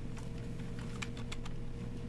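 A few faint, scattered clicks of computer keys being tapped, over a low steady electrical hum.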